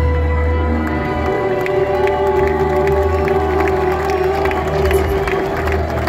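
Live concert music: long held electronic tones over a deep, steady bass drone, with a crowd cheering over it.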